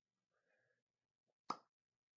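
Near silence, broken by a single short, sharp click about one and a half seconds in.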